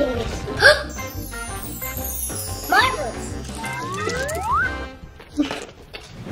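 Children's background music with cartoon sound effects: a long falling high whistle, then two rising whistle-like glides about four seconds in.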